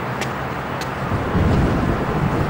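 A steady, noisy low rumble with a few faint crackles, swelling louder about a second and a half in.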